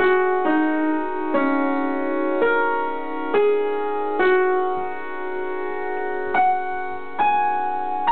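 Upright piano playing a slow melody in the middle register. Notes are struck about once a second and each is left to ring, with one held for about two seconds near the middle.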